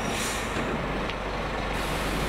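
Double-deck livestock truck's diesel engine running, a steady low rumble, with a short high hiss about a quarter second in.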